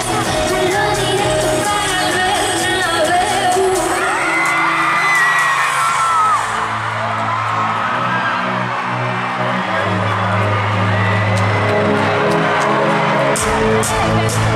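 Live pop song over an arena sound system, a woman singing lead with crowd noise. The drum beat drops out about halfway, leaving the bass and synths, and comes back just before the end.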